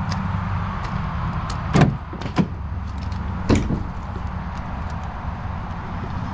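Aluminum pickup tailgate on a Ford Super Duty being unlatched and lowered: a sharp latch click about two seconds in, then clunks as the tailgate swings down and stops on its supports about a second and a half later, over a steady low hum.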